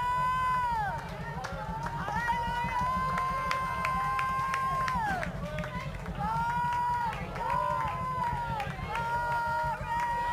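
Worship singing: a high voice holds long drawn-out notes, each phrase ending in a downward slide, with short breaks between phrases.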